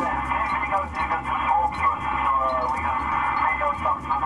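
A man's voice over a two-way radio, thin and narrow, asking the boarding crew to take out swabs. A steady low hum runs underneath.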